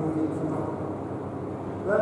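Indistinct men's voices talking, fading in the middle, with a louder voice starting again near the end.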